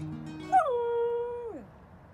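Samoyed giving one howl about a second long that starts high, drops to a held pitch, then slides down at the end.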